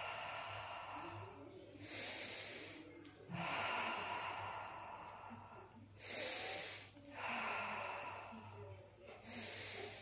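A woman's deep cleansing breaths, slow and audible: each long breath of about two seconds is followed by a shorter, sharper one, about three times over.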